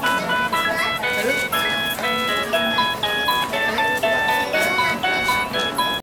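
Children's electronic toy tablet playing a cheerful synthesized tune of short, bright beeping notes in quick succession.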